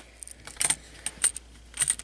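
Plastic Lego pieces clicking and clattering under the fingers as a small part is fitted back into a Lego speeder model: a few short bursts of small clicks, the loudest about half a second in and near the end.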